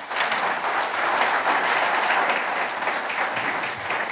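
An audience applauding, the clapping rising sharply at the start and then holding steady.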